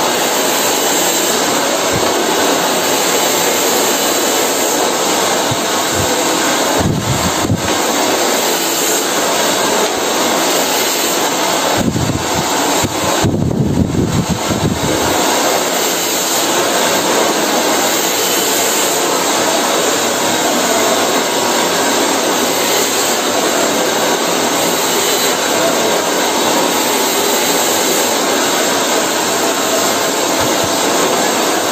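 Handheld hair dryer running steadily, blowing onto hair that is being drawn through a round roller brush. A low rumble rises briefly around the middle.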